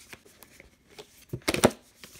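Small white cardboard pen box being handled on a wooden table: a few faint taps, then a quick cluster of knocks and scrapes about one and a half seconds in.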